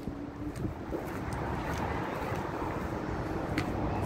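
Steady low wind noise on the microphone over distant road traffic, with a few light clicks of footsteps on pavement.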